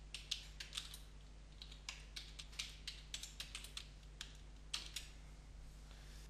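Faint typing on a computer keyboard: a run of irregular keystroke clicks that stops about a second before the end.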